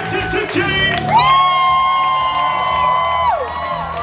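Live band and singers performing a pop song. A single high voice holds one long note from about a second in, then drops off, while the audience cheers and whoops.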